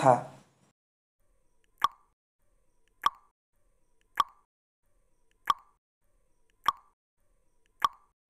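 Countdown timer sound effect: six short, identical pops a little over a second apart on an otherwise silent track, one for each number of a five-second answer countdown.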